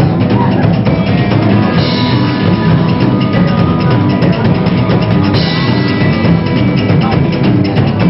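Live psychobilly band playing loudly and steadily: drum kit, upright bass and electric guitars, with cymbal crashes about two seconds in and again a little past halfway.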